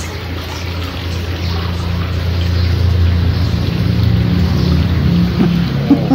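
A low, steady droning rumble that swells through the middle and eases near the end, with a couple of small knocks near the end.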